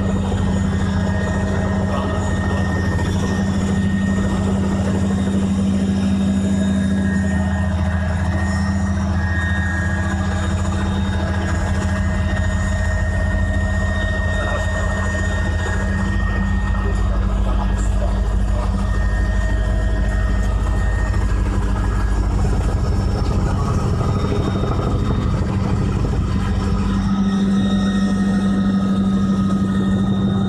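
Small aircraft's engine running steadily in flight, heard from inside the cockpit, a low steady drone whose note shifts about three-quarters of the way through.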